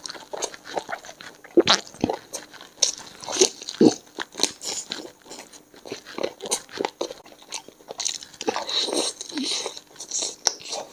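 Close-up chewing and biting as a chicken leg piece in masala gravy is eaten off the bone: many short, irregular mouth clicks and crunches, busiest near the end.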